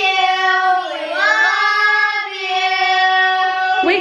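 Several children singing a drawn-out answer together in unison, long held notes with a dip in pitch about a second in, cutting off just before the end.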